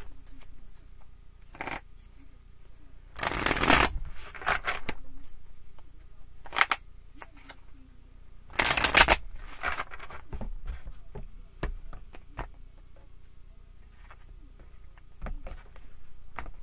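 A tarot deck being shuffled by hand: two quick riffle shuffles, about three seconds in and about nine seconds in, with soft taps and slides of the cards between.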